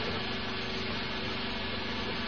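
A steady low hum with an even hiss, unchanging throughout, like a small engine running.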